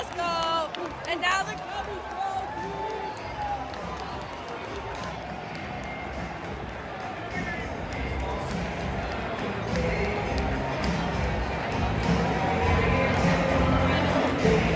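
Big ballpark crowd cheering and chattering as it celebrates a home win, opening with a whoop from a nearby fan. Music over the stadium speakers grows louder through the second half.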